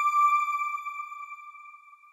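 A single electronic chime from a TV channel's logo ident, ringing at one clear pitch and fading away over about two seconds.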